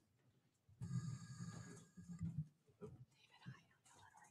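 Faint, indistinct murmured talk, loudest for about a second near the start, then trailing off into scattered quiet sounds.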